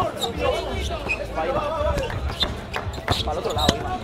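A basketball being dribbled on an outdoor court: a run of sharp bounces at an uneven pace.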